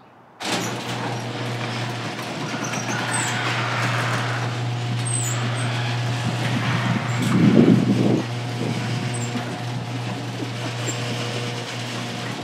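Electric garage door opener running as the sectional door rises: a sudden start, then a steady motor hum with rattling noise, swelling briefly into a louder rumble about seven to eight seconds in.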